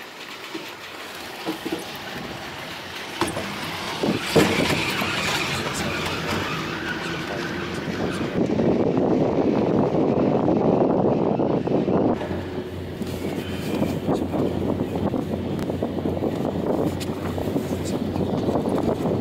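Montaz Mautino basket lift running: a few sharp clacks and knocks in the first few seconds as the basket passes a tower's sheave assembly, then a steady mechanical rumble and rush of the moving haul rope and basket, loudest in the middle.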